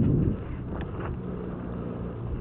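Wind buffeting the camera microphone: a loud low gust right at the start, then a steadier low rumble with a few faint clicks.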